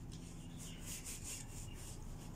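Paper tissue being rubbed and crumpled in the hands: a run of short, soft scratchy strokes, about four a second.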